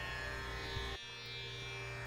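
Soft background music under a pause in the talk: a steady instrumental drone of held tones, dipping slightly in level about a second in.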